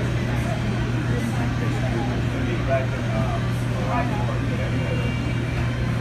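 MH-60T Jayhawk helicopter hovering close by: steady rotor and turbine noise with a constant low hum, and indistinct voices underneath.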